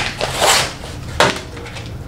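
Card-and-plastic pen packaging being torn and pulled open by hand: rustling and crinkling, with a sharp snap just over a second in.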